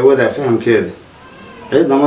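A man's voice, drawn out and melodic with long held notes, stopping about a second in and starting again near the end.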